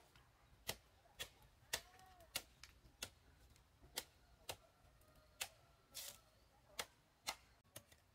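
Faint, sharp taps or knocks, about two a second, a few with a short ring after them.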